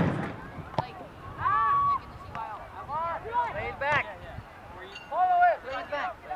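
Several short shouted calls from voices on a soccer field, coming in separate bursts, with one sharp knock less than a second in.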